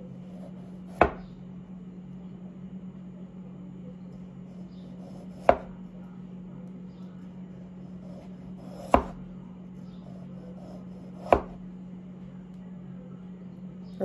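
Santoku knife slicing through a peeled raw potato, the blade knocking down onto a wooden cutting board four times, a few seconds apart. A steady low hum runs underneath.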